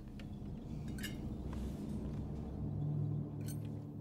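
A few light clinks of cutlery against plates and glass at a dinner table, about a second in and again near the end, over a low steady drone that swells a little midway.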